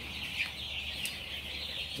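A brood of about two hundred two-day-old chicks peeping continuously, a dense chorus of many high, overlapping chirps.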